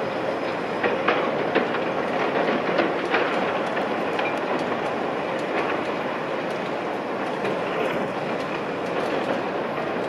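Kobelco SK210 hydraulic excavator running steadily as it tips a bucket of soil into a dump truck's steel bed and swings back to dig. A run of knocks and clatter comes in the first few seconds.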